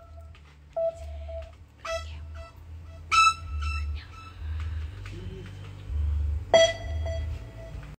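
Four short, clear pitched beeps at uneven intervals, not all on the same note, each starting sharply and ringing out briefly, over a low steady hum.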